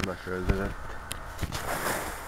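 A man's voice murmuring briefly, with no clear words, followed by a soft hiss.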